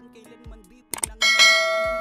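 A sharp click sound effect, then a bright bell ding that rings on and slowly fades: the click-and-bell effects of a subscribe-button animation.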